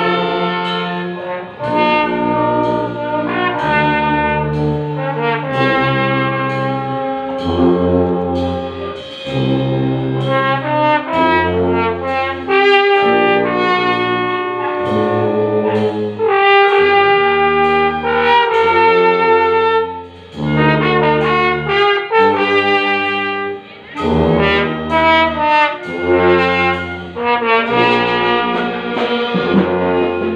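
Brass band playing a medley: trumpets, trombones and saxophones holding chords over sustained bass notes, with two short breaks about two-thirds of the way through.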